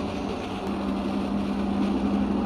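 FM radio static from a TEF6686 portable receiver tuned between stations, an even hiss of noise with a steady low hum under it.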